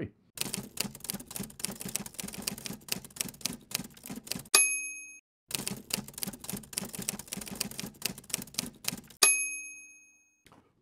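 Typewriter sound effect: two runs of rapid key strikes, each about four seconds long and each ending in a ringing bell ding like a carriage-return bell.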